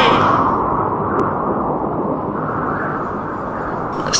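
Storm sound effect: a steady, low rushing of wind and rain.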